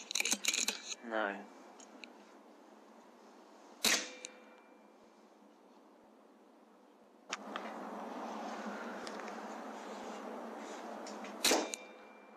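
Air Arms S510 .22 pre-charged pneumatic air rifle fired twice, each a single sharp crack: once about four seconds in and again near the end. A quick cluster of clicks comes at the very start.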